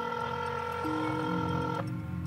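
Telephone ringing tone of an outgoing call: one electronic tone held for nearly two seconds, then cutting off. It plays over a low ambient music drone.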